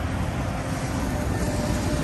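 Double-decker bus passing close by, a steady low engine rumble with tyre and road noise, over the general hum of city traffic.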